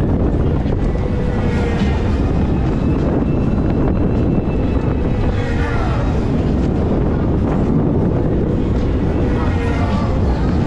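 Steady wind buffeting the microphone of a camera swinging through the air on a fairground thrill ride. Faint voices and music lie underneath.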